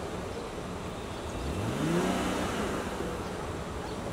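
Street traffic noise, with a vehicle engine rising in pitch as it accelerates about one and a half seconds in, then holding steady.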